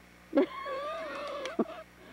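A person's long, wavering, high-pitched vocal whine, held for over a second after a short vocal burst.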